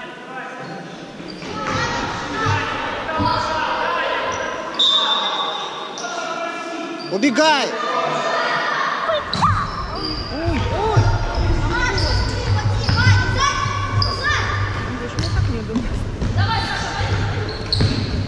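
Children's futsal game on an indoor court: players' high voices shouting and calling, with the ball thudding against the hard floor. Everything echoes in a large hall.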